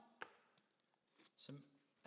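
Near silence: room tone, with one light click about a quarter of a second in.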